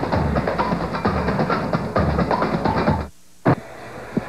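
Drum-driven theme music from a TV sports broadcast bumper, cut off abruptly about three seconds in. A single sharp knock follows, then quieter arena background.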